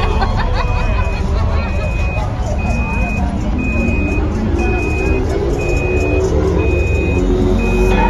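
A vehicle's reversing alarm beeping steadily, one high tone about once a second, over crowd chatter and a heavy low rumble.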